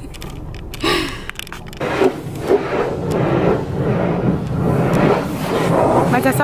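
Automatic car wash running, heard from inside the car's cabin: a steady rushing noise that builds from about two seconds in.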